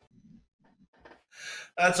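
Mostly quiet, then about a second and a half in a man takes a short, audible breath in, just before he starts speaking.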